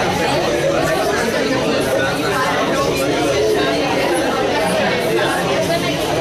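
Crowd chatter: many people talking at once in a steady babble of overlapping conversations.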